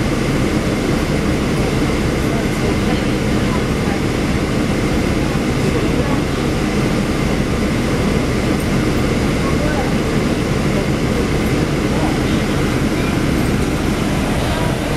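Steady cabin hum heard inside a NABI 40-foot low-floor diesel transit bus that is idling while stopped.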